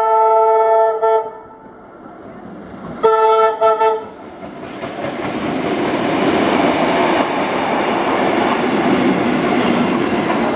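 Horn of a Tait 'Red Rattler' electric train: a long chord blast, then a second, shorter broken blast about three seconds in. After that, the train's running noise grows steadily louder as the wooden-bodied carriages pass close by.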